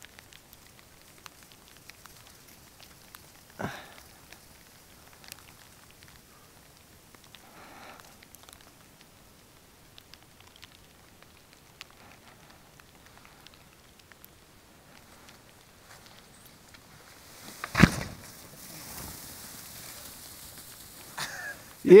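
Mostly quiet outdoor snow scene with faint scattered crackles. About three-quarters of the way through, a single loud thump followed by a few seconds of soft hiss of spraying snow as a skier lands a pillow drop in deep powder.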